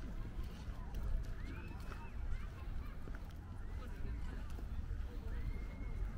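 Outdoor park ambience heard while walking: a constant low rumble with faint footsteps. Over it come distant voices and a few short high calls that rise and fall.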